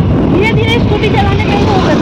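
A woman talking over steady wind rush on the microphone and the running noise of a moving scooter.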